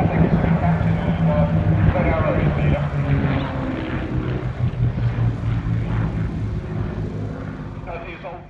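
Light propeller aircraft flying overhead, its engine drone dropping in pitch about halfway through as it passes and then fading.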